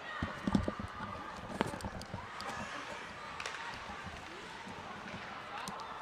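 Ice hockey rink sound: a low, steady haze of skating and crowd murmur, broken by a few sharp clicks of sticks on the puck, the clearest about a second and a half in.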